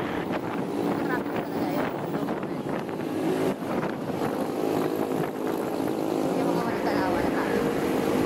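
Honda ADV 160 scooter's single-cylinder engine running steadily while riding in traffic, with wind buffeting the microphone.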